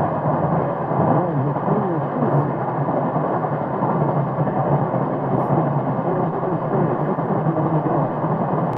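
Weak, distant AM broadcast on 1260 kHz through a 1934 Philco 60MB tube radio: steady static and noise with faint, wavering, unintelligible station audio buried in it and a low steady hum, the sound of long-distance skywave reception.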